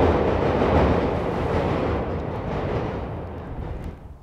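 Chicago 'L' elevated rapid-transit train passing, a steady rushing rumble of wheels on the track that gradually fades as it moves off.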